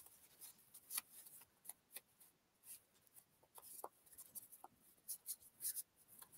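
Faint, scattered rubbing of a dry paper towel over a hand-stamped aluminum cuff blank, buffing off the excess marker ink in short strokes.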